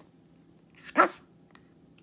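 Shih Tzu giving a single short, sharp bark about a second in, a demand bark at its owner.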